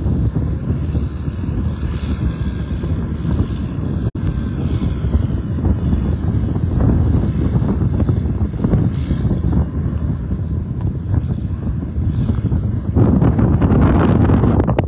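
Wind buffeting the microphone outdoors: a loud, uneven low rumble that swells and eases, with a brief cut-out about four seconds in.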